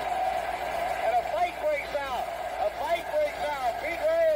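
A baseball broadcast announcer talking over a steady background tone.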